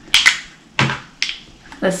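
A few short, sharp clicks of plastic foundation bottles and caps being handled, two close together at the start and two more spaced out within the next second.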